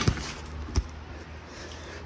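Two short knocks about three quarters of a second apart as a floor jack's steel handle is handled and fitted into the jack, over a low steady hum.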